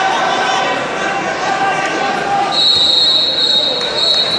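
Spectator voices and shouting fill the gym. About two and a half seconds in, a high, steady whistle starts and is held for well over a second, standing out above the crowd as a wrestler is taken down.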